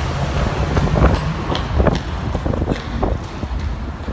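Low rumble of wind buffeting the microphone, with several short knocks scattered through it.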